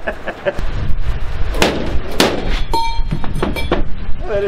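Two sharp hammer blows, about half a second apart, on a metal grommet-setting die used for setting brass grommets in sail cloth. A brief metallic ring and a few lighter knocks follow, over a low rumble.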